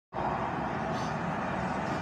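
Steady background noise, an even hum with no separate events.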